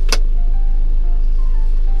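Steady low drone of the motorhome's engine idling while parked, heard from inside the cab. A single sharp click comes just after the start, and a few soft background music notes follow.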